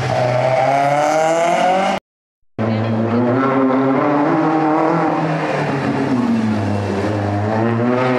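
Citroën C2 rally car's engine accelerating past with a rising note, cut off by a brief silence about two seconds in. A second rally car's engine then comes in, revving up, easing off past the middle, and revving up again as the car passes near the end.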